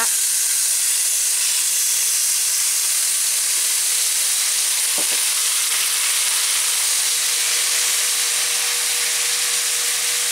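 Blended guajillo chile sauce sizzling steadily as it is poured into hot olive oil in a frying pan.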